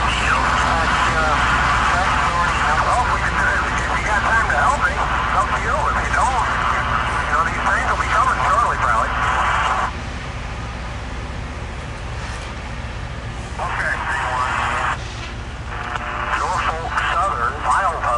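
Loram rail grinder running with a steady low engine rumble as it approaches. Over it is a louder wavering sound that stops about halfway through, then comes back briefly and again near the end.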